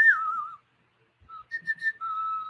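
A man whistling a few notes through his lips: a note that slides down and wavers, a short silence, then a brief low note and three quick higher notes near the end.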